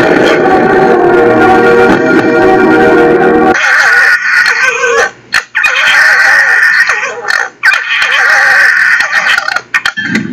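Music for the first few seconds, then two red foxes screaming at each other in several shrill, high-pitched bouts.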